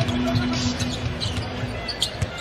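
Basketball being dribbled on a hardwood arena court, with arena crowd noise and a steady held note underneath for most of the two seconds.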